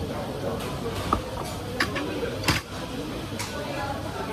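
Metal fork clinking on a ceramic plate in several short, sharp taps, the loudest about two and a half seconds in, over a steady murmur of voices in the background.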